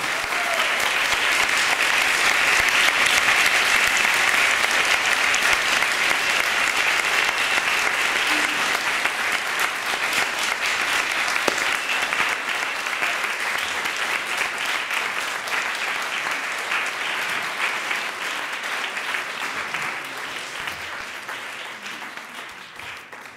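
Audience applauding: a long round that swells within the first couple of seconds and slowly tapers off toward the end.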